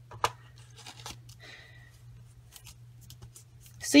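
A hand pressing a sheet of cardstock down onto a layer of inked shaving cream: soft paper rustling and a few light taps, the sharpest about a quarter second in, over a faint steady low hum.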